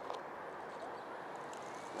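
Faint steady outdoor background noise, with a thin whine that rises slowly in pitch in the second half: the small electric motor of a 6 oz foam Small Stik RC plane beginning to spin up for takeoff.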